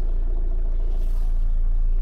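Car engine idling with a steady low hum while the car stands still, heard from inside the cabin through the open window.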